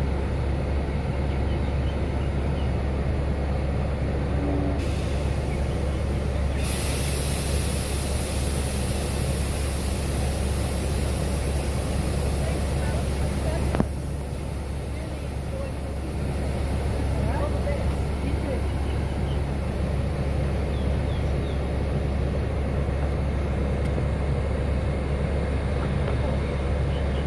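Standing stainless-steel passenger train with a steady low hum, and a long hiss of compressed air being let out of the brake system. The hiss starts about five seconds in, grows stronger and cuts off with a sharp knock near the middle.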